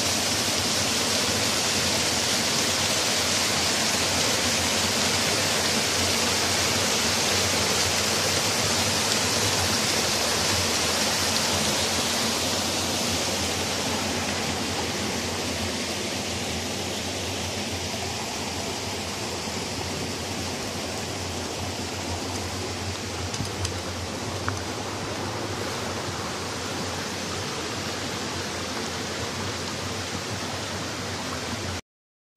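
Small stream rushing steadily over rocks, a little quieter from about halfway through, with a couple of faint clicks near the end.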